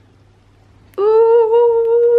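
A woman's voice humming one long, steady note, starting about a second in and held to the end.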